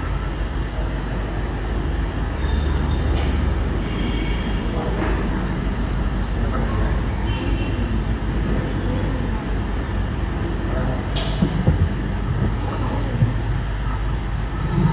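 Steady low room rumble with indistinct voices in the background, and a few soft low thumps near the end.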